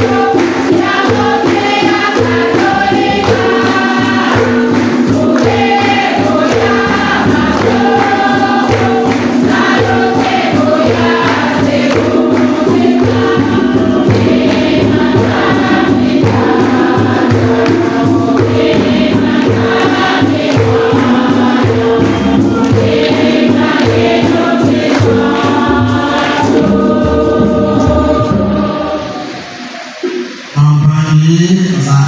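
A church choir singing a liturgical hymn with musical accompaniment and a steady low beat, dying away in the last couple of seconds.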